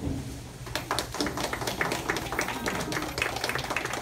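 A small audience applauding: scattered, irregular hand claps that begin about a second in and continue.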